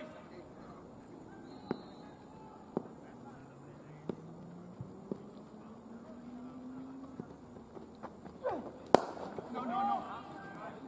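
A single sharp crack of a cricket ball meeting the bat, about nine seconds in, just after the delivery. Players' voices call out around it.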